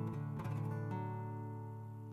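Acoustic guitar chords strummed and left to ring, with a new chord struck about a second in and the sound slowly fading.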